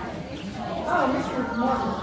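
Indistinct voices of people talking, louder from about a second in.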